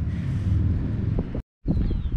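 Low, steady rumble of wind buffeting the camera microphone, broken by a brief dead gap about one and a half seconds in.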